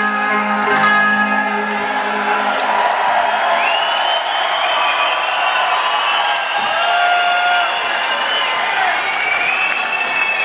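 The band's final chord on electric guitars rings out and ends about a second and a half in. A crowd cheering and applauding takes over, with a few long, high held tones bending in pitch above it.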